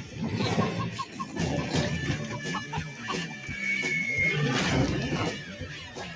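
Cartoon background music mixed with the squeaky, clucking chatter of cartoon lemmings.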